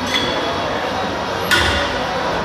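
Two clanks of metal gym weights, a light one at the start and a louder, ringing one about a second and a half in, over steady gym background noise.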